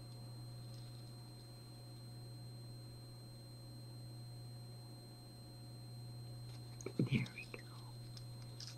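Quiet room tone with a steady low electrical hum and a faint high whine. Near the end there is a brief soft murmur of a voice, mixed with a few faint ticks.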